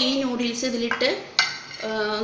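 A woman talking, with a single sharp clink of a steel utensil against a pot about two-thirds of the way through.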